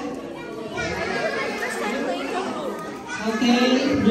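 Overlapping chatter of children and young people talking over one another in a large hall, with one voice getting louder about three seconds in.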